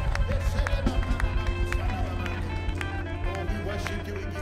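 Live worship band music: keyboard and guitars over a strong bass and a steady drum beat, with voices singing along. It eases off slightly near the end.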